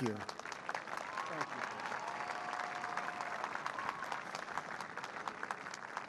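Large crowd applauding steadily, a dense clatter of many hands clapping, with a faint voice or two heard through it in the first half.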